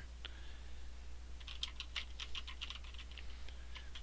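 Computer keyboard typing, faint: a single keystroke just after the start, then a quick run of about a dozen keystrokes from about a second and a half in.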